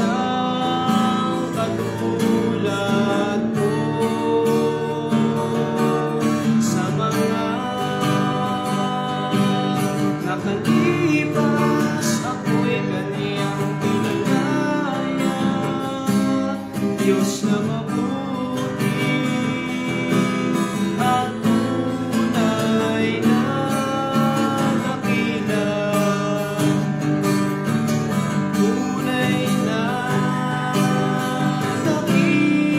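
A man sings a worship song to his own strummed acoustic guitar.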